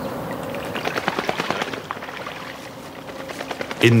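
Rustling and crackling of footsteps and hedge leaves as a person in rubber waders moves along a hedge. It comes as a run of quick, irregular crackles, densest through the middle seconds.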